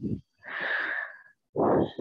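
A woman's long, audible exhale of about a second, breathy and unvoiced, followed near the end by a louder breath.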